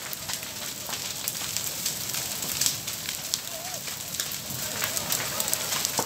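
Wooden beach cabins burning: the fire's steady hiss with many sharp, irregular crackles and pops as the timber burns.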